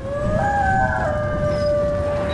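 Logo-animation sound design: a low rumble under several held synth tones that glide upward at the start, one of them breaking off about a second in.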